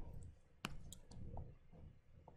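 A few faint clicks of a stylus tapping on a tablet screen: one sharp click and several softer ticks, as the pen tool is picked from the drawing app's toolbar.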